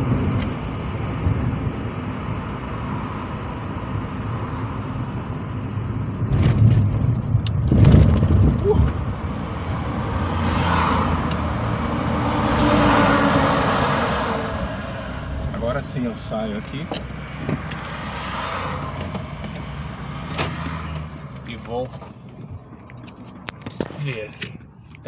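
Road and engine noise heard from inside a moving car: a steady low rumble, with a few knocks and rattles and a louder stretch in the middle.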